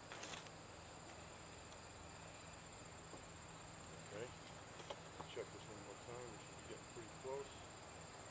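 A faint, steady, high-pitched drone of insects calling, with faint voices in the background in the second half.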